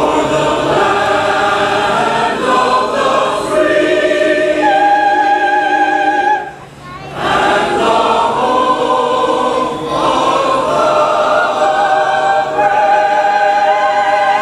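Mixed choir of men's and women's voices singing long, held chords together. The singing breaks off briefly about six and a half seconds in, then resumes.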